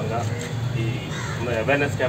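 A man speaking, with crows cawing over the speech and a run of caws near the end.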